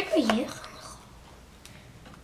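A voice saying "one", then quiet room sound.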